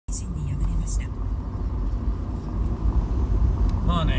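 Low, steady rumble of a car's road and engine noise heard from inside the cabin while driving.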